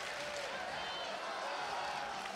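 Arena crowd cheering for a grappler: a steady din of many voices, with faint single shouts rising out of it.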